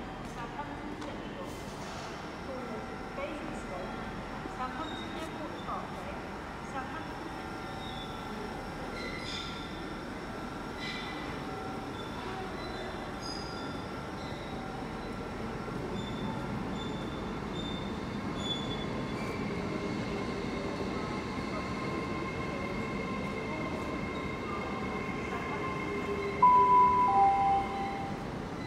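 A train moving through the station: a steady mix of electric whines over a rumble that slowly grows louder, with scattered clicks. Near the end comes a two-note station PA chime, a higher tone and then a lower one, announcing the next message.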